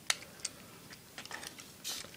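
Several light, separate plastic clicks from a Transformers Dark of the Moon Megatron action figure as its truck-mode parts are pulled apart and folded out by hand.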